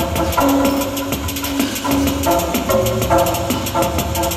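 Live improvised experimental music: a rapid, steady clicking rhythm runs under held tones that change pitch every second or so.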